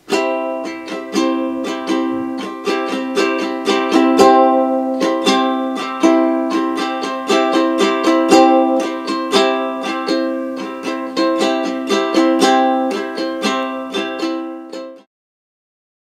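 Ukulele in standard tuning strummed on a C major chord, the same chord repeated in a steady strumming rhythm; it stops abruptly about a second before the end.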